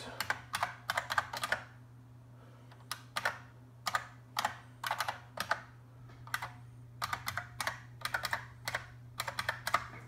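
Typing on a computer keyboard in several bursts of quick key clicks with short pauses between them, as an email address and then a password are entered into a login form. A low steady hum runs underneath.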